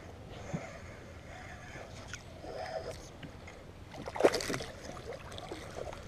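A hooked largemouth bass splashing at the water's surface beside a small boat as it is reeled in, with one louder splash about four seconds in over soft water sounds.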